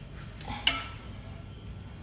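A single sharp clack of kitchen utensils against the pot about two-thirds of a second in, as a spoon is lifted out of boiling water with chopsticks. A steady high-pitched tone runs underneath.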